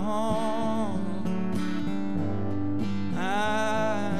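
Male voice and strummed acoustic guitar performing a song live: a held sung note dies away about a second in, the guitar plays alone for about two seconds, and the singing comes back in near the end.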